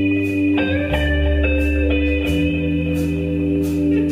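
Live band playing an instrumental passage of a slow ballad with no singing: sustained chords over a bass line, the harmony changing about every second.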